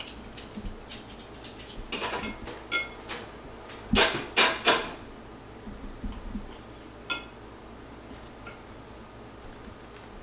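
Metal cake knife clinking and knocking against a glass cake stand and plates while cake is sliced: scattered light clinks, some ringing briefly, and three louder knocks in quick succession about four seconds in.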